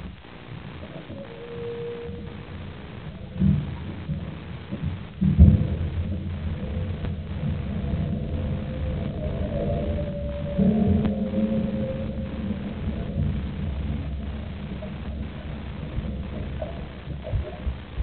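Muffled underwater sound picked up by a waterproof camera lying on the bottom of a pool: a low, dull rumble of the water, with heavier thumps a few seconds in and faint wavering tones.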